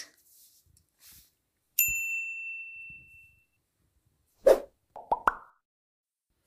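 Video-editing sound effects of a subscribe-button animation: a single clear ding about two seconds in that rings out for over a second, then near the end a short pop followed by two quick rising plops.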